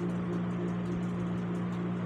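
Stuffed pointed gourds frying in oil in a kadhai on low flame, a faint sizzle over a steady low hum.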